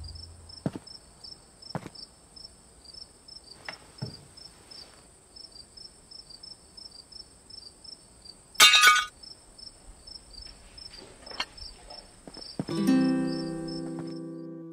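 Crickets chirping in a steady pulse of about three chirps a second over a thin high ringing, with faint clicks of cutlery on plates and one brief, louder clatter a little past halfway. Music with piano-like notes comes in near the end.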